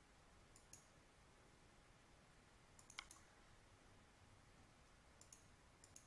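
Near silence with a few faint computer mouse clicks, mostly in close pairs, about two seconds apart; the one about three seconds in is the loudest.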